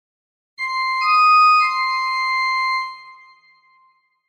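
Music: a few high, clear keyboard notes, the first starting about half a second in and a second, higher note joining a moment later. They are held together, then fade away before the end.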